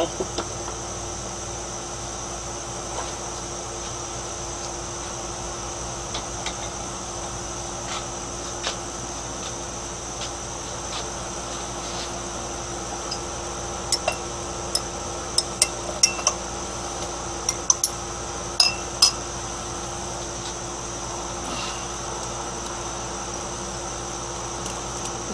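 Light, sharp clinks of glass labware, about a dozen over some five seconds from a little past halfway, over a steady low hum with a faint high whine behind it.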